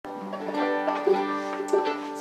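Banjo picking a few notes, spaced about half a second apart, each left to ring on.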